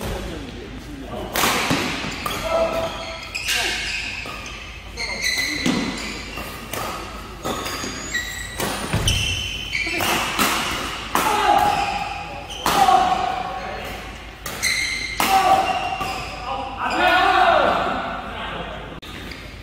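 Doubles badminton rally in an indoor hall: sharp racket strikes on the shuttlecock, one to two a second, with short squeaks of court shoes and footfalls on the floor between them.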